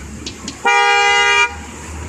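Horn of a 7.5-inch gauge electric miniature Romancecar train sounding one steady blast of just under a second, starting about half a second in.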